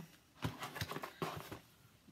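Cardboard mailing box being handled: a few light taps and scrapes as hands shift their grip on it.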